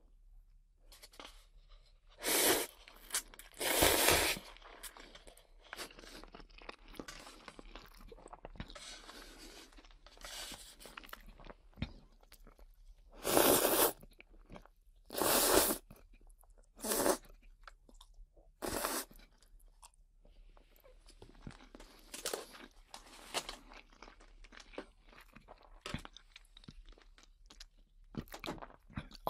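Somen noodles slurped close to a binaural dummy-head microphone: several short, loud slurps, each under a second, with quieter mouth and chewing sounds between them.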